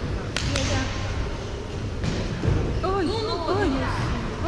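Futsal ball struck twice in quick succession with sharp, echoing smacks in a large sports hall, then a rapid run of short squeaks from players' shoes on the court floor over the hall's background noise.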